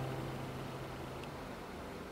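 The last low note of an acoustic guitar dies away over about the first second and a half, leaving a faint steady hiss.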